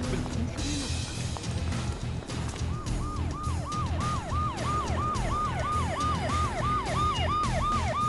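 Police car siren in a fast yelp, sweeping up and down about three times a second, starting about three seconds in. Background music with a low pulsing beat plays throughout.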